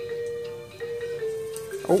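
Electronic tune from a toy baby walker's speaker: a simple melody of long, steady held notes. A short voice breaks in near the end.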